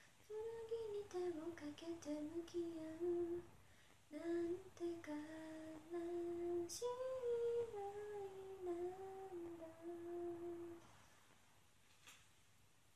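A young woman humming a tune solo, in short phrases of held notes, which stops about a second before the end.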